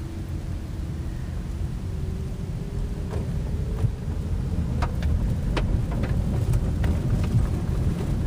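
Road rumble from a moving car heard from inside, with a faint engine hum that rises slightly in pitch and a few sharp ticks.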